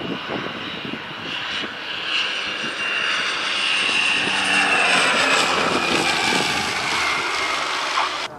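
Small twin-engine turboprop airplane flying close by on its landing approach, its propeller and engine whine growing louder to a peak about halfway through while the whine's pitch slowly falls as the plane passes.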